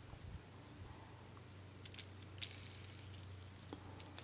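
Small plastic Beyblade driver (Drift) handled between the fingers: faint plastic clicks about halfway in, then a short light rattle as its free-spinning parts are turned.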